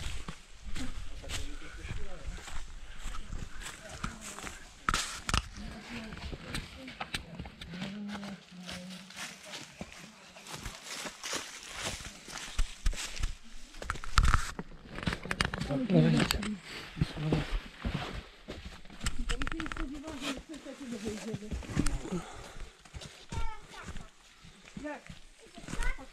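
Footsteps on a forest path covered in dry leaves, in many short irregular steps, with people's voices talking at times.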